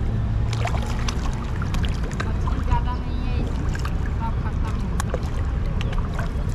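Water lapping and small splashes around an arm and camera held just under the surface, over a steady low rumble, with scattered small clicks.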